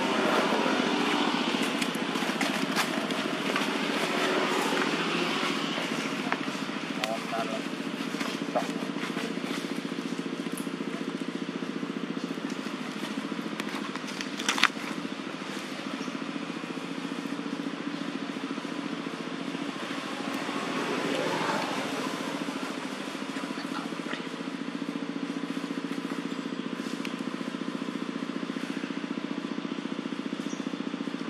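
A steady low drone with indistinct voices in the background, and one sharp click about fifteen seconds in.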